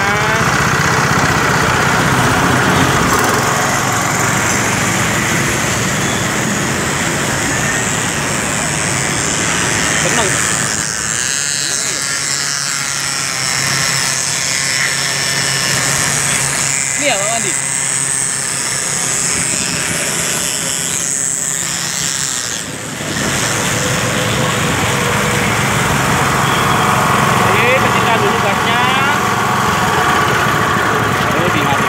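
Honda GP160 single-cylinder four-stroke engine running steadily, driving a concrete vibrator's flexible shaft and poker. Its low rumble drops away for about ten seconds past the middle, then returns suddenly.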